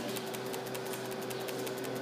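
Faint, rapid, irregular ticking over a steady low electrical hum.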